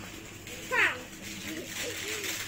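A young child's voice: a short, high squeal about a second in, the loudest sound, followed by bits of babble. A steady low hum runs underneath.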